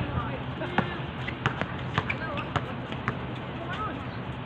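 Basketball bouncing on an outdoor hard court during play: a run of sharp, irregular bounces, with players' voices in the background.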